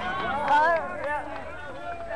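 Speech: voices talking, with one loud exclamation about half a second in.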